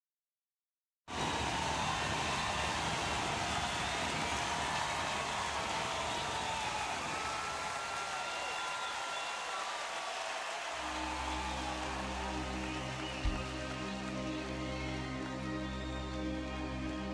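Intro of a music track: a steady rushing noise with faint gliding whistle-like tones starts about a second in. About eleven seconds in, a sustained low chord enters under it, with one brief low thump a couple of seconds later.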